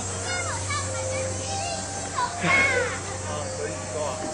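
Children's voices calling and chattering, high and gliding, in two short spells about half a second in and around two and a half seconds in, over a steady low hum.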